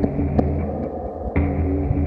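Electronic music played live on synthesizers: a steady low bass drone under a held chord, in phrases that restart about every two seconds, with a single sharp click just under half a second in.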